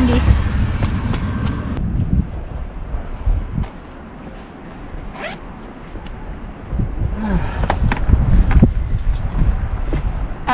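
Sandy sneakers and socks being handled and shaken out by hand: scattered rustles, scrapes and taps, thickest near the end, with a low rumble in the first couple of seconds.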